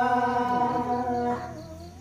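A man singing a Balinese pupuh Ginada unaccompanied into a microphone. He holds one long steady note that fades away a little past a second in, leaving a short pause for breath.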